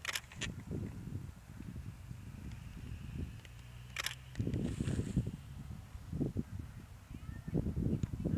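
Camera shutter clicks, two in quick succession right at the start and one about four seconds in, over a low, irregular rumble.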